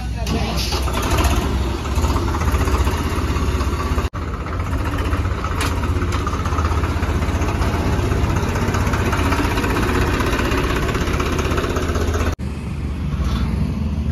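Swaraj compact tractor's diesel engine running steadily with a low rumble.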